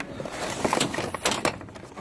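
Cardboard Funko Pop boxes being handled on a tightly packed store shelf: light scraping with a few short knocks as a hand pushes and pulls them about.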